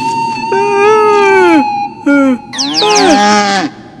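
Moo calls from an animated bull character: a long call falling in pitch, a short one, then a longer, overlapping run of falling calls. A steady high tone carries through the first half and stops.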